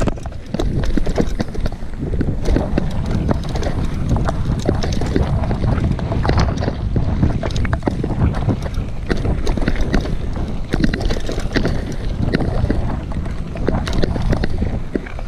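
Mountain bike riding a bumpy dirt trail, with a steady rush of wind on the microphone and frequent rattles and knocks from the bike jolting over the ground.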